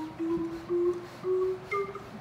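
Orgelkids kit organ's wooden pipes sounding single notes one key after another, each held about half a second and each a step higher, in a steadily rising run up the keyboard.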